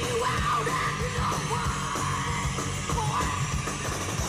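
Grunge-punk rock band playing live: a yelled lead vocal over electric guitars and a steady drum beat, taped from the crowd on a camcorder.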